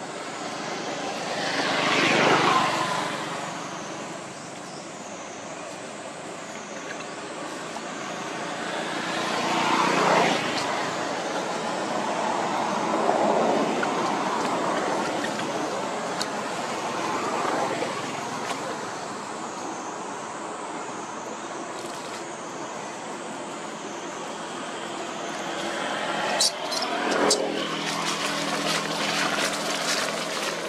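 Passing motor traffic: a steady noise that swells and fades several times as vehicles go by, loudest about two seconds in and again around ten seconds. Near the end come a few sharp clicks and a short pitched, voice-like sound.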